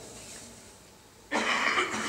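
A single cough near the end, after a stretch of quiet room tone.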